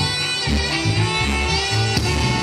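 Live band playing an instrumental break with no singing: horns and saxophones over electric bass and a steady beat.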